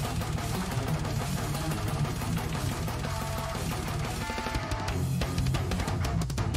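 Technical death metal: fast-picked distorted electric guitars over drums, a dense, unbroken wall of sound.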